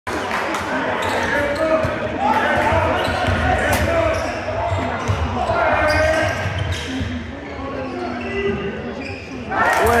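Basketball bouncing on a gym floor among the irregular knocks of play, over spectators' voices echoing in a large sports hall. Near the end the crowd breaks into a loud cheer.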